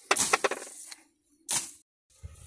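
A quick run of sharp cracks and rustles from grass and plant stems, fading within about a second. The sound then cuts out completely, except for one short noisy burst about one and a half seconds in.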